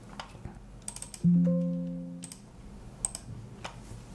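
Several sharp computer-mouse clicks. A little over a second in, a single low note with overtones starts suddenly, like a chime or a plucked string, and fades out over about a second.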